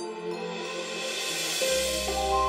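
Background music score of held notes. A hissing swell rises and fades over the first second and a half, and a deep bass note comes in near the end.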